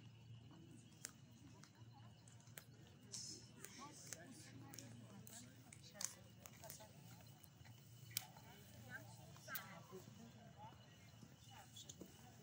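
Quiet open-air ambience of a large paved square: faint, distant voices over a low hum, with a few isolated sharp clicks.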